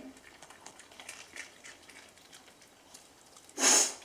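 Small dog chewing a treat: faint, scattered crunching and mouth clicks. Near the end, a short, loud hiss-like rush of noise.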